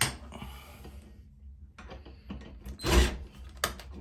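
Scattered clicks and knocks of handling a cordless drill and a stainless steel grab bar against tile, with a brief louder clatter about three seconds in.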